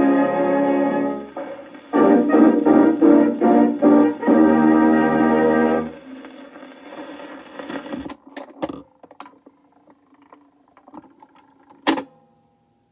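A 1931 dance-band 78 rpm record plays its closing bars on a gramophone and ends on a held final chord about six seconds in. Faint surface noise and a few clicks follow as the stylus runs into the lead-out groove. The record changer's mechanism then lifts the tonearm back to its rest, with a sharp click near the end.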